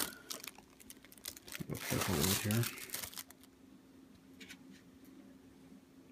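Packing paper crinkling and rustling as it is handled, loudest in the first second and again around two seconds in, then thinning to a few faint rustles.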